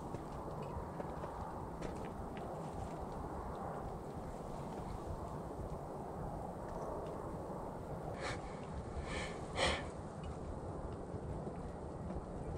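Steady low outdoor background noise, with a few short soft sniffs about eight to ten seconds in.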